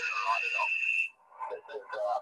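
Voice heard over an amateur radio transceiver's speaker during a contact, with a steady high whistle over it for about the first second. It cuts out briefly, then broken voice comes back.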